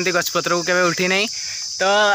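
Steady high-pitched insect chirring, with a person's voice over it that drops out for about half a second near the end.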